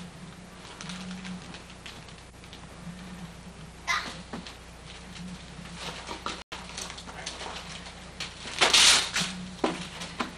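Gift wrapping paper rustling and tearing as a present is unwrapped, with a loud rip near the end, over a steady low hum.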